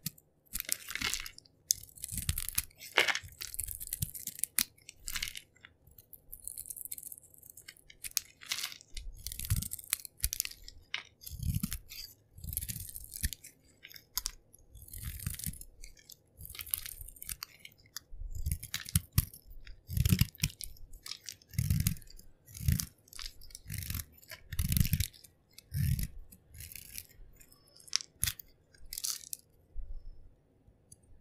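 A bar of soap being carved with a snap-off utility knife blade: many short, irregular crunching and scraping strokes as flakes and chunks break off and crumble away.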